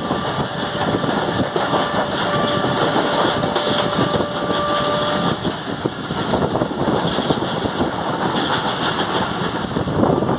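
Passenger train running at speed, heard from beside an open carriage doorway: a steady rumble and rattle of the coaches on the track with rushing air. A faint steady tone sounds through the first half.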